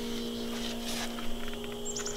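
A few soft knocks and handling sounds as the camera is carried, over a steady low hum. Near the end a bird starts a falling series of short, high chirps.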